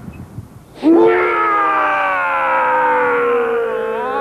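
A man's long, loud, drawn-out mock-horror wail that starts suddenly about a second in and slowly falls in pitch.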